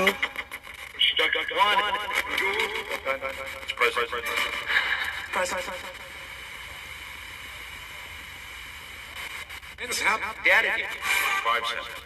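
Ghost box (spirit box) output: chopped fragments of radio-like voices, with a stretch of steady static hiss in the middle.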